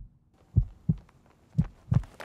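Heartbeat sound effect: deep, muffled double thumps, the pairs about a second apart.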